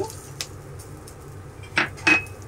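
Roasted peanuts tipped from a small glass bowl into a kadai of frying onions and curry leaves, landing softly with a faint tick, then one sharp knock of glass or utensil against the pan near the end.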